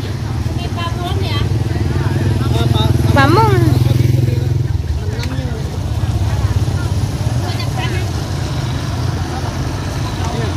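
Car and motorcycle engines passing close by, a low steady rumble that swells for a couple of seconds just after the start, with people talking nearby.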